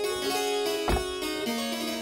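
Harpsichord playing baroque music: held plucked notes that change every fraction of a second. A single low thump about a second in.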